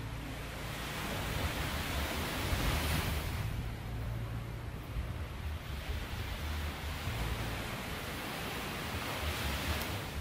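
Small waves washing onto a sandy beach: a steady surf hiss that swells about three seconds in and again near the end, with wind rumbling on the microphone.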